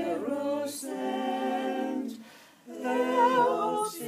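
Small mixed-voice quintet singing a cappella in harmony, holding long chords of a lullaby-like part-song in Esperanto. The voices stop briefly a little past halfway for a breath, then come back in.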